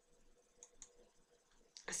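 Near silence with two faint short clicks about a quarter second apart, from the slide show being advanced to the next slide. A woman's voice begins right at the end.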